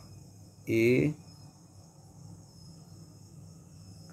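Quiet room tone: a low steady hum with a faint, thin, steady high-pitched tone, after a single short spoken syllable about a second in.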